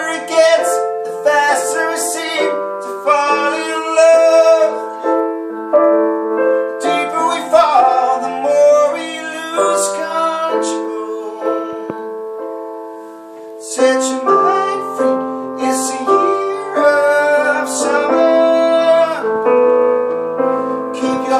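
Live music: a man singing a slow pop ballad over piano played on a Roland stage keyboard. The song eases into a softer moment near the middle, then fuller, lower piano chords come back in.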